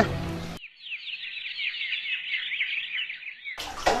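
Birds chirping: a dense flurry of short, high, overlapping chirps that starts abruptly about half a second in and cuts off suddenly just before the end.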